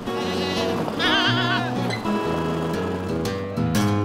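Goats bleating twice, two short wavering calls about a second apart near the start, over acoustic guitar music.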